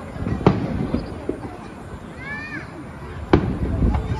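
Aerial firework shells bursting: two sharp bangs, one about half a second in and another near the end, with crowd voices between them.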